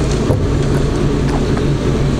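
Steady low hum and rumbling noise with hiss, with a few faint clicks.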